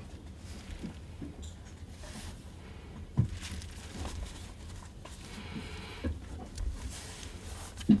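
Handling noise of a Canon EF70-200mm f/2.8L IS II USM lens being turned over in gloved hands: soft rubbing with a few dull bumps, the loudest just before the end, over a low steady room rumble.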